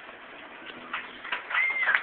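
An audience starting to applaud as a song ends: a few scattered claps about a second in, then one whistle that rises and falls near the end, with the clapping growing louder.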